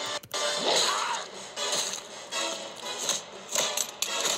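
A cartoon's soundtrack playing from a computer's speakers: dramatic music under fight sound effects.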